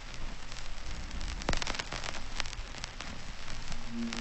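Rain sound effect: a steady hiss with scattered crackling drops. Soft sustained synth chords come in just before the end.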